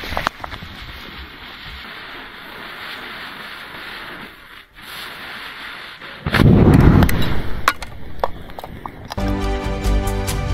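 A lit fuse hissing steadily as it burns down for about six seconds, then a sudden loud, deep rush as the matchstick-head charge inside the glass jar ignites, followed by scattered crackles. Music comes in near the end.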